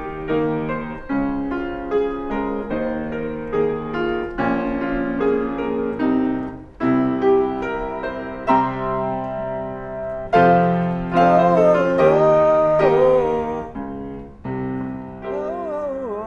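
Grand piano played in a slow run of chords and single notes, each one struck and left ringing. About ten seconds in, a voice joins briefly over the piano, its pitch bending and wavering.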